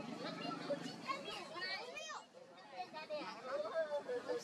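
A babble of several distant voices talking over one another outdoors, with a short falling call just before the middle.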